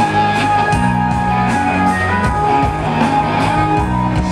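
Live rock band playing loudly through a festival PA, heard from the crowd: electric guitar over bass and drums, with no singing in this stretch.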